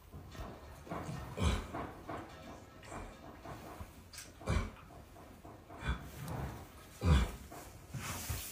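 A mare in labour grunting four times as she strains to deliver her foal, the last grunt the loudest.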